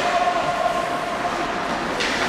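A steady horn-like tone, held for about a second and a half over the general noise of an ice-hockey rink crowd.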